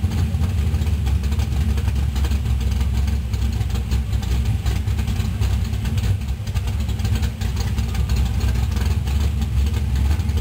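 V8 engine of a late-1970s Pontiac Firebird Trans Am idling with a steady low exhaust rumble as the car creeps slowly past.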